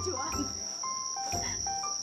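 A continuous high-pitched trill of crickets chirping at night. Under it, light background music plays short held notes over a low pulsing bass.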